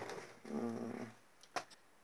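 A man's short, low drawn-out hesitation sound between phrases, followed by a single faint click about one and a half seconds in, then near silence.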